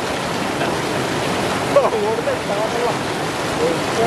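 River rapids rushing steadily over rocks in white water. A person's voice rises above it briefly about two seconds in.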